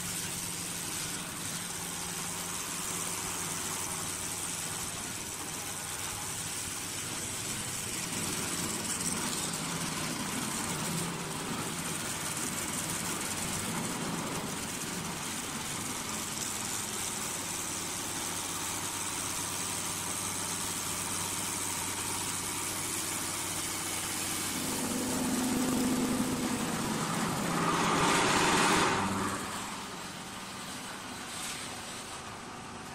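CNC wood lathe running, its motors humming under a steady hiss as the spinning wooden workpiece is turned and sanded by rotating abrasive brush heads. The sound grows louder for a few seconds near the end, then drops back suddenly.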